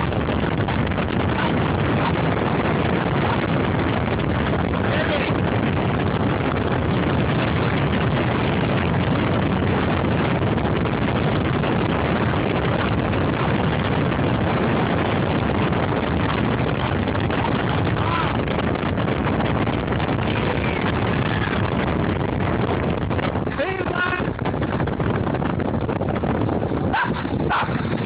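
Steady rush of wind and road noise from a moving car with its window open. Near the end it eases a little as the car slows, and a few short pitched sounds come through.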